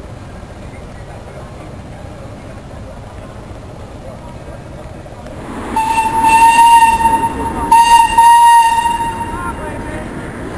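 Steam whistle on a steam-powered narrowboat blowing two long blasts of one steady note, back to back, starting a little past halfway.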